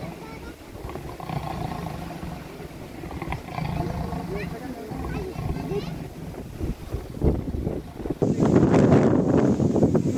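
A leopard caught in a steel trap cage growling, in uneven bouts. About eight seconds in, a louder stretch of men's voices and commotion takes over.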